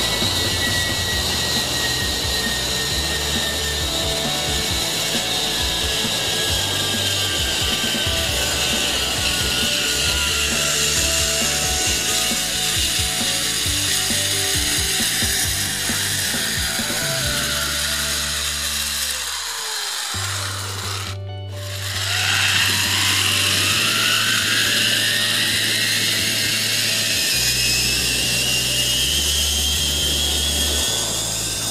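Zipline trolley pulleys running along a steel cable: a whirring whine that slowly falls in pitch for about twenty seconds as the rider slows, breaks off briefly, then starts again and rises in pitch as a new run picks up speed. Background music with low bass notes plays underneath.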